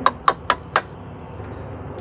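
A quick run of four sharp, light clicks about a quarter second apart in the first second, from the removed pump pre-filter's mesh screen and clear plastic bowl being handled, over a steady low hum.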